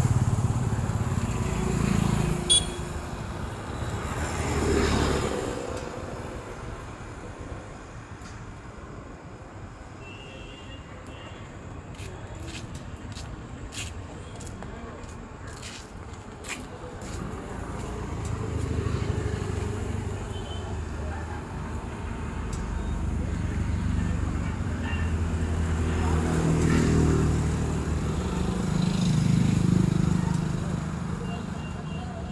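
Road traffic passing: vehicle engines swell and fade over the first few seconds and build again over the last third, with a quieter stretch between.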